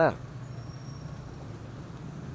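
Steady city traffic background with a low engine hum running under it.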